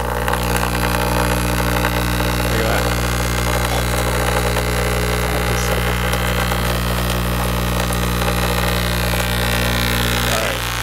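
Speaker driven at full volume with a 30 Hz sine wave, giving a loud, steady low buzz with a stack of distortion overtones.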